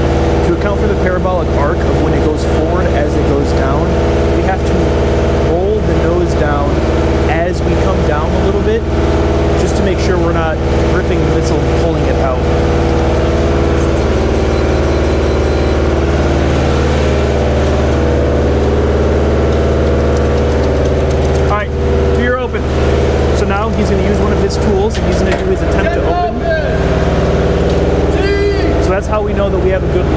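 Munitions lift truck's engine running steadily, a loud constant hum, with voices talking over it at times.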